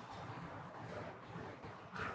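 Faint, steady trickle of hot water poured from a kettle onto coffee grounds in a pour-over brewer.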